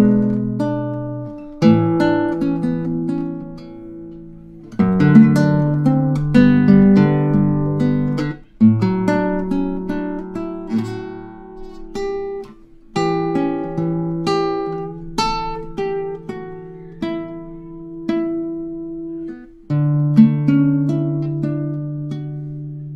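Classical guitar played fingerstyle: a slow chaconne-style chord progression of plucked chords and bass notes in phrases of a few seconds, each opening with a firmly plucked chord that rings down.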